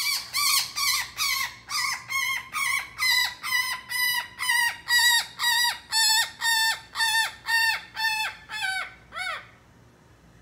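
Red-bellied woodpecker calling over and over, about two short, downward-sliding calls a second, while it is held and masked down with isoflurane gas anesthesia. The calls stop shortly before the end.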